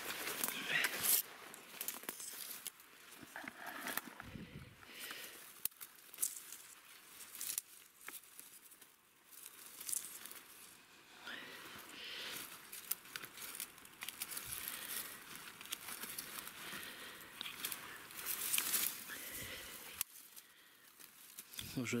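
Grass and dry stems rustling and crackling in irregular spells as they are brushed past and pushed aside by hand.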